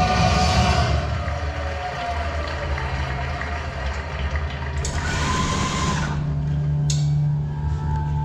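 Choir music from an exhibit soundtrack ends about a second in, leaving a steady low rumble; a short rushing, water-like noise comes in about five seconds in, and a single click follows about two seconds later.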